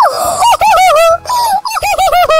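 A very high-pitched, cartoonish character voice in quick, short syllables that rise and fall in pitch, without clear words, like giggling or babbling.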